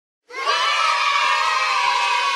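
A crowd of children shouting and cheering, many high voices together, starting about a quarter of a second in.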